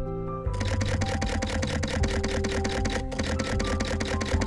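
Camera shutter firing in a rapid continuous burst, starting about half a second in with a short break near three seconds, over background music.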